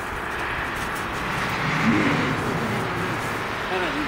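A car passing on the road, its tyre and engine noise swelling to a peak about two seconds in and then easing off. Soft pitched vocal sounds come over it around the middle and again near the end.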